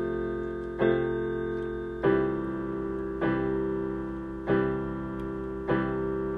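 Electronic keyboard with a piano voice playing sustained chords, one struck about every 1.2 seconds and left to ring and fade, five chords in all.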